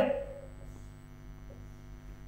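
Low, steady mains hum under a pause in speech, with a man's voice trailing off at the start.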